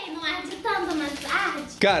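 Speech: a high-pitched voice talking or vocalizing, with no clear words.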